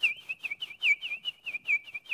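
A man imitating the peeping of baby chicks by mouth: a rapid run of short, high, falling peeps, about five a second, each one alike.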